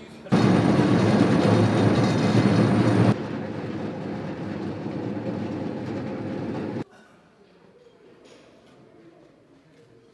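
Heavy construction equipment running: a very loud, harsh machine noise for about three seconds, then Caterpillar compact track loaders' diesel engines running more steadily, cutting off suddenly a little before the end.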